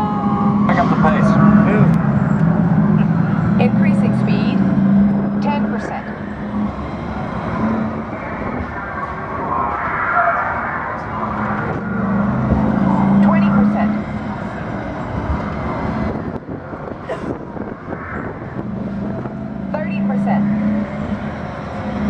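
Test Track ride vehicle travelling along the track: a steady rumble of wheels and drive, with a low hum that swells and fades three times.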